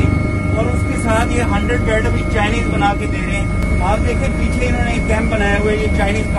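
Helicopter engine and rotor noise heard inside the cabin: a steady low rumble with a steady high whine, with a man's voice talking faintly through it.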